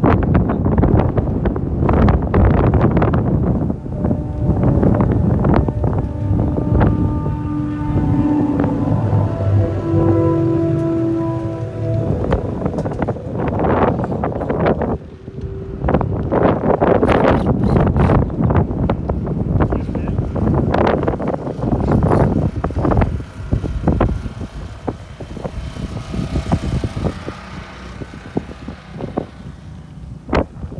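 Strong dust-storm wind buffeting the microphone in loud, gusty rushes, easing somewhat near the end. For several seconds about a third of the way in, a few held tones sound through the wind.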